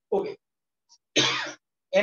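A man clearing his throat: one harsh half-second burst about a second in, after a short vocal sound at the start.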